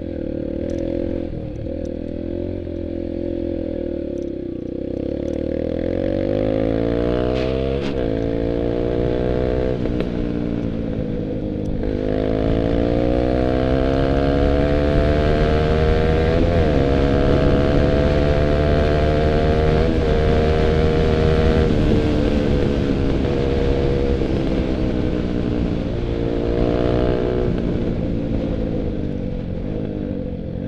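Dirt bike engine heard up close from on the moving bike, revving up through the gears: the pitch climbs, then drops sharply at each shift, about eight and twelve seconds in, holds high for a while, then eases off with a brief blip of throttle near the end.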